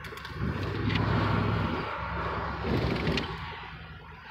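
Car engine and road noise heard from inside the cabin, the engine swelling louder for about a second early on and again briefly near three seconds as the car slows and turns.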